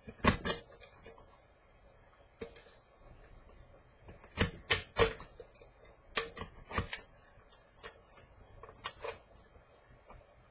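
X-Acto craft knife cutting slowly around an aluminum soda can: irregular sharp clicks and scrapes as the blade punches and saws through the thin metal, coming in short clusters every second or two.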